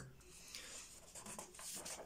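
Faint rustling over quiet room tone.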